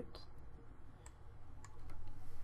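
A few faint, scattered computer mouse clicks over low room noise.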